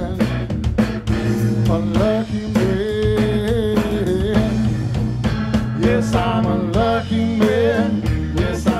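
A blues trio playing live. An electric guitar plays a lead line with gliding, bending notes over electric bass and a drum kit.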